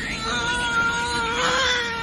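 A young child's long, drawn-out whine, held on one gently wavering pitch and trailing off near the end.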